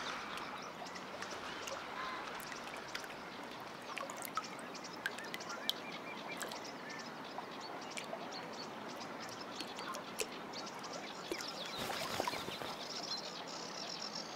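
Great crested grebe bathing: a steady run of small splashes, drips and patters of water as it dips and rolls to wash its feathers, with a somewhat louder burst of splashing about twelve seconds in.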